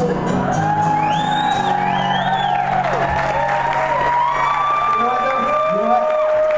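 Live acoustic band music: acoustic guitar and several voices hold a long final chord, which breaks off near the end. Audience whoops come about a second in and again about two seconds in.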